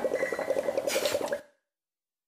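A rapid run of small bubbling plops, a water-bubble sound closing the electronic track, with a short hiss about a second in; it cuts off suddenly about one and a half seconds in.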